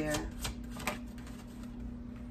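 A tarot deck being handled and shuffled by hand, with a few light clicks of the cards in the first second.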